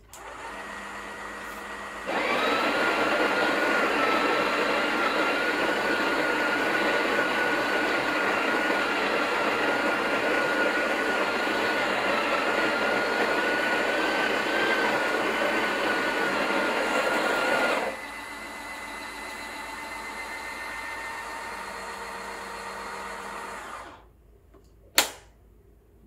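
Breville Oracle BES980's built-in burr grinder grinding coffee beans into the portafilter, a loud steady grinding with a motor whine for about sixteen seconds. Before and after it a quieter motor hum runs, the later one as the machine tamps the dose, and a sharp click comes near the end.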